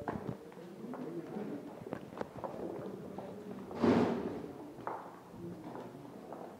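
Footsteps on a hard tiled floor, irregular knocks as someone walks, over faint background voices. A short, loud rush of noise comes about four seconds in.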